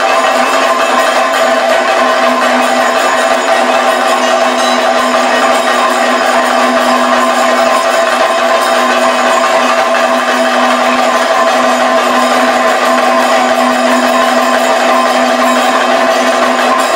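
Kathakali percussion: chenda and maddalam drums played loudly and continuously without a break, with steady ringing tones running over the drumming.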